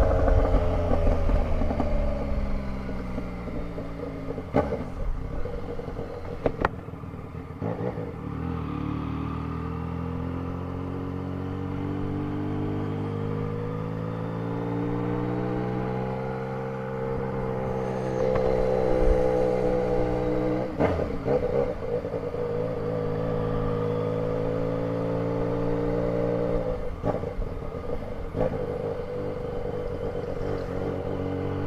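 Yamaha Tracer 900 GT's inline three-cylinder engine running at low road speed. Its pitch drops as the bike slows early on, then rises and falls gently with the throttle. A few sharp knocks cut across it.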